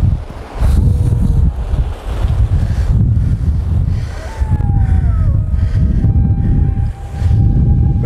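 Wind buffeting the microphone in gusts over the wash of surf breaking on a beach. Faint thin tones, some falling in pitch, sound about halfway through, and one steady tone near the end.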